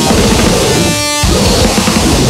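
Harsh noise music: a loud, dense wall of distorted noise. About a second in it briefly gives way to a thin, pitched buzz, then the wall resumes.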